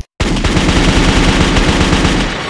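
After a split second of silence, a loud, fast, unbroken rattle of sharp strikes starts abruptly, over a steady deep bass.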